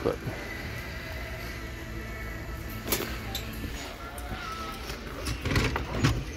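Shop room tone: a steady low hum with faint background music, broken by one sharp click about three seconds in and a few small knocks near the end.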